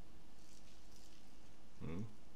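Quiet room tone with a low steady hum, and one short rising vocal sound from a person near the end.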